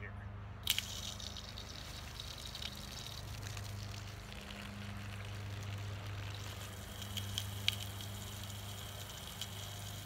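Pressurized water spraying from a garden hose nozzle fed by a SHURflo 4008 self-priming diaphragm pump, starting with a click about a second in and then hissing steadily. A steady low hum runs underneath.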